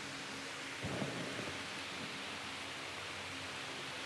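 Steady, faint background hiss with a low hum under it, during a pause in speech; a slight soft sound rises about a second in.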